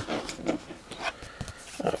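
Soft handling of a large printed cardstock card being slid across a tabletop, with a few light taps and rustles.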